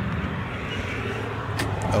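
Steady hiss of road traffic going by outdoors, with a couple of short clicks near the end.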